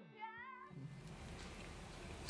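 A cat meowing once, briefly, near the start, a short wavering call; then faint room tone.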